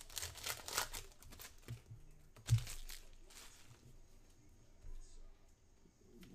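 Foil trading-card pack wrapper crinkling and tearing as it is pulled open by hand, with the loudest crackle about two and a half seconds in, then quieter handling of the cards.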